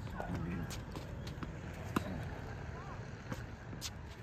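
Tennis balls knocking on an outdoor hard court as a ball machine feeds them: they bounce and are struck by a racket. There are about four sharp knocks, the loudest about two seconds in.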